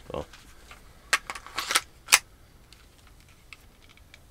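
Clicks and rattles of the Umarex Beretta 92 CO2 BB pistol being handled, with a single sharp, loud snap about two seconds in.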